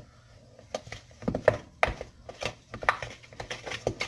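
Wooden spoon stirring thick creamed butter and sugar in a stainless steel mixing bowl by hand, knocking and scraping against the bowl in irregular strokes, roughly three a second, starting about a second in.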